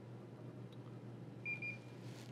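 Mitutoyo Linear Height gauge giving a few quick, high electronic beeps about one and a half seconds in, as its probe touches the surface plate and a measurement point is taken.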